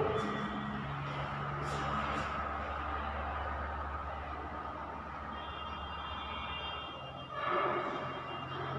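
A marker writing on a whiteboard, with a faint steady high tone during the second half, over a steady low hum in the room.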